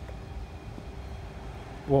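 Steady low outdoor background rumble with a faint steady hum, until a man starts speaking near the end.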